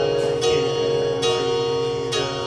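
Digital keyboard playing sustained chords, a new chord struck a little under once a second, each one ringing on into the next.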